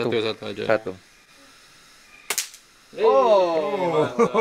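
A single shot from a bolt-action pellet air rifle: one sharp crack a little over two seconds in.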